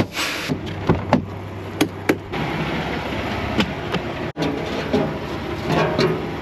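Steady outdoor background noise with a few sharp clicks and knocks in the first two seconds: a semi-truck's cab door and latch being handled.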